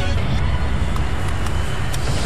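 A steady, dense low rumble with hiss over it and a few faint clicks, from the sound design of a TV drama promo.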